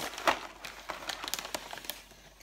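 Paper fast-food bag and packaging rustling and crinkling as it is handled and reached into: a run of irregular crisp crackles, the loudest just after the start, thinning out toward the end.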